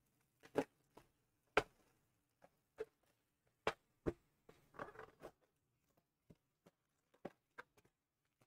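Plastic shrink wrap being peeled off a cardboard trading-card box and the box lid opened: faint scattered crinkles and taps, with a short run of rustling about five seconds in.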